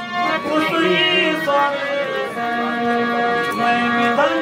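Harmonium playing a slow melody of long held reed notes, the stage music of a Ramlila performance.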